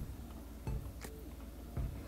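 A few faint, short knocks and clinks, about three in two seconds, as a hand and multimeter probes shift against a glass bowl of water.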